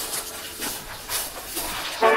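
A soft, even hissing noise with a few faint soft thumps.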